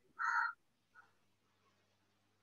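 A crow cawing: a harsh caw in the first half-second, then a short, fainter call about a second in.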